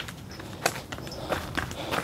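Footsteps going down outdoor concrete steps, a short sharp step about every two-thirds of a second.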